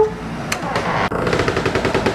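Outdoor air-conditioner condenser unit running with a fast, even rattling buzz over a steady hum. It comes in after a door latch clicks about half a second in.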